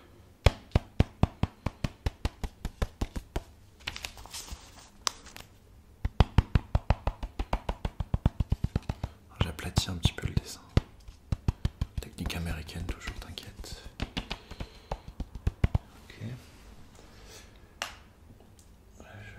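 Runs of quick, sharp taps on a spiral-bound sketchbook during drawing, about four to five a second, each run lasting a few seconds with short pauses between.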